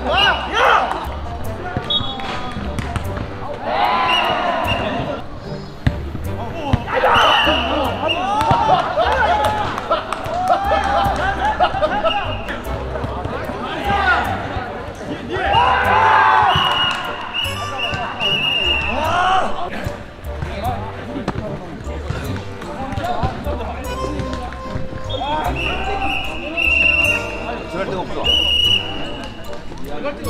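Players shouting and calling out in bursts during a jokgu (foot volleyball) rally, with the ball thudding again and again as it is kicked and bounces on the hard dirt court.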